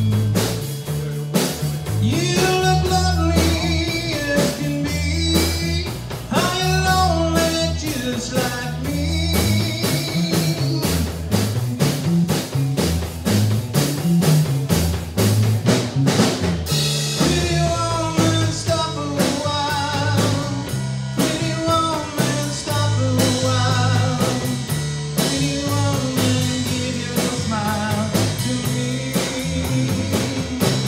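Live blues-rock band playing an instrumental passage on electric guitars and drum kit over a moving bass line, with a lead guitar bending notes and holding them with vibrato.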